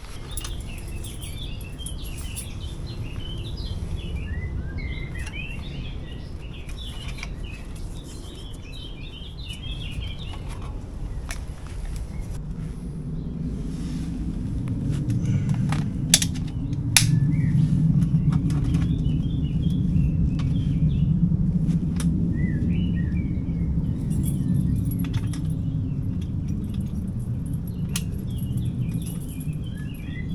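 Woodland birds chirping and singing in several spells over a steady low rumble. A few sharp clicks come around the middle, from a trail camera being handled.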